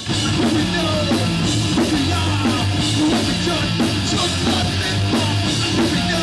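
Hardcore punk band playing live at full volume: distorted electric guitar, bass and drum kit. The band kicks in hard right at the start after a brief dip, then runs at a steady loud level.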